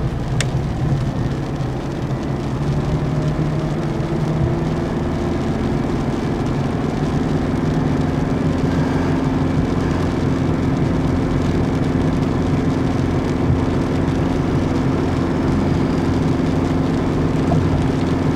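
Car driving on a wet motorway heard from inside the cabin: steady engine hum and tyre noise, growing louder over the first several seconds as the car gathers speed, then holding steady.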